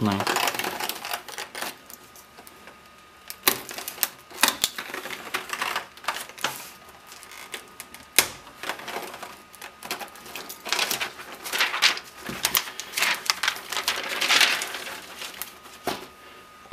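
Thick plastic wrapping film crinkling and rustling in scattered bursts as it is handled over a moulded plastic parts tray, with small plastic clicks among them.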